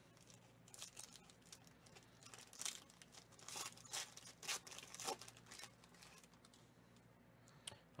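Foil wrapper of a Panini Prizm football card pack being torn open and crinkled by hand: faint, scattered crackling and ripping for the first six seconds or so.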